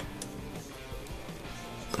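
Instrumental background music with guitar.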